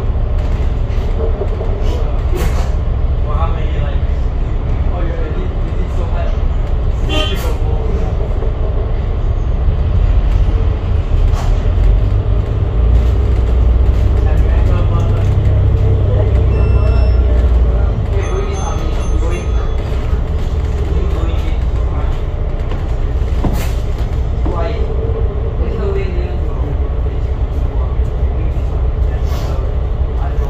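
Cabin noise aboard an Alexander Dennis Enviro500 double-decker bus on the move: a steady engine and road rumble with rattles and clicks from the bodywork. The low rumble grows louder for several seconds in the middle, then eases.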